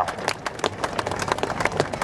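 A small group of people clapping: irregular, overlapping hand claps with no steady rhythm.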